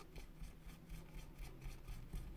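Faint scratchy rubbing with small irregular ticks: a small hand tool dabbing and scraping felting wax onto loose wool fibres laid on a craft mat.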